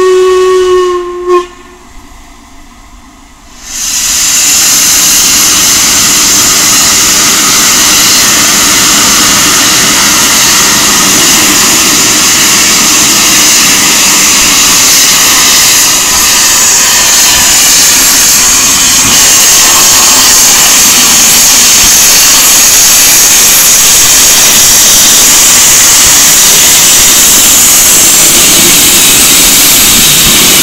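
A steam locomotive's whistle holds one steady note that cuts off about a second in. After a short lull, a loud, steady hiss of steam from the open cylinder drain cocks begins about four seconds in and continues as the locomotive moves off.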